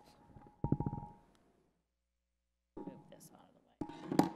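Muffled, low voices and handling noise picked up by a meeting-room microphone, with a faint steady high tone underneath and a louder burst less than a second in. About halfway through, the sound cuts out to dead silence for about a second, then returns.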